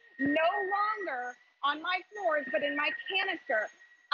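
Fast talking over the steady high whine of a Shark UltraLight corded stick vacuum running in carpet mode as it is pushed over a rug.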